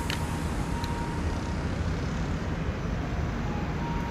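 Steady low rumble of background noise, with a faint click right at the start.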